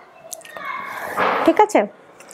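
Rustling of light organza voile fabric as a dress piece is lifted and moved, with a short vocal sound near the end.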